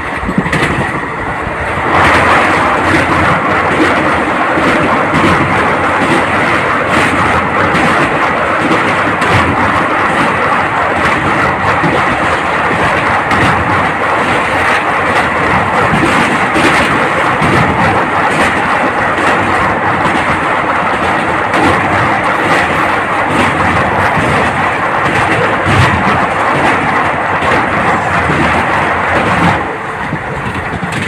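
Moving train heard loud through an open carriage window: a steady rumble and rush of wind as it crosses a steel truss bridge. It grows louder about two seconds in and drops back just before the end.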